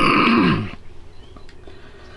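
A man's breathy, wordless groan of relief, its pitch falling over about the first half second.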